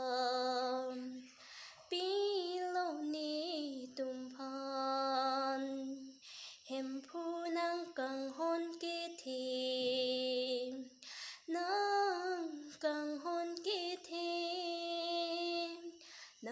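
A woman singing solo and unaccompanied, in long held notes with short breaks for breath between phrases.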